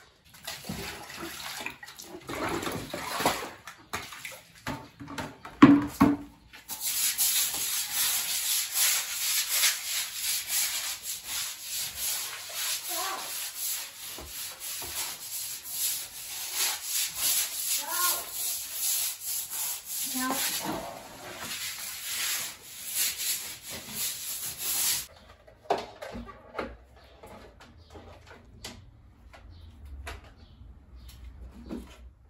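A stiff broom scrubbing a wet, detergent-soaked cement floor in rapid back-and-forth strokes. The scrubbing stops suddenly about 25 seconds in. In the first few seconds there are irregular knocks and scrapes.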